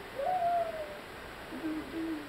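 A voice hooting in imitation of an animal call, taken for a rooster's crow: one long note that rises and then slowly falls, followed near the end by a lower note that slides down.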